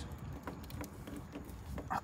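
Irregular light clicks and taps of a plastic trim tool against the plastic grille slats and badge of a VW Transporter T6.1, as the tool pushes on the grille instead of getting behind the badge to pop it off.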